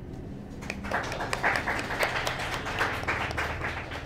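Audience applauding: clapping that starts about a second in, builds, and dies away near the end.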